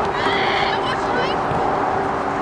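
Shouting from players and onlookers at a girls' soccer match, with one high-pitched call about half a second in, over a faint steady hum.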